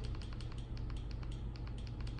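Fast, even clicking, about six or seven clicks a second, as the Fire TV menu is scrolled down row by row with the remote, over a low steady hum.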